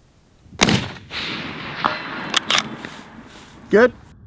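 A single shot from a Sig Sauer Cross bolt-action rifle about half a second in, followed by a rolling echo that fades over about two seconds. A few sharp clicks come during the echo.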